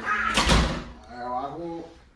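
A single loud, sharp thump about half a second in, then a man's voice briefly.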